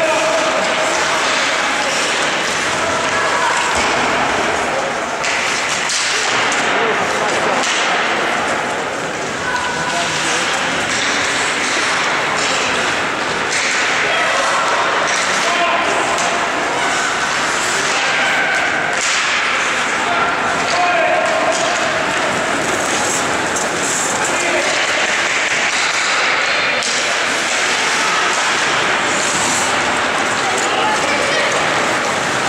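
Ice hockey game in play: skates scraping the ice, with scattered clacks and thuds from sticks, puck and boards, under indistinct voices of spectators and players.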